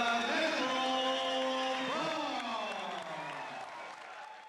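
A boxing ring announcer's amplified voice over the arena public-address system, drawing words out into long held calls: one level call, then a sharp rise about two seconds in that slowly falls away, trailing off near the end.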